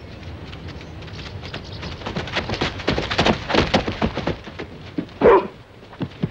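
A quick run of crackling footsteps through dry leaf litter and undergrowth, then a dog gives one short bark about five seconds in, the loudest sound.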